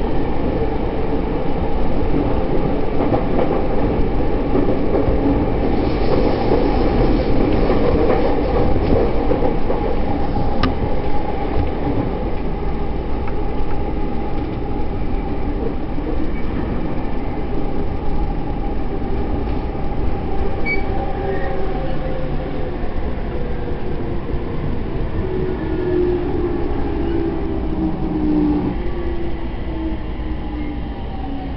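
Electric commuter train heard from inside the car: steady running rumble of wheels on rails and car body. In the second half a motor whine falls steadily in pitch as the train slows toward a station.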